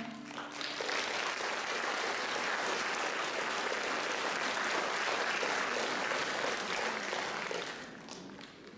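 A classical guitar's last strummed chord rings out briefly, then an audience applauds steadily, the clapping dying away near the end.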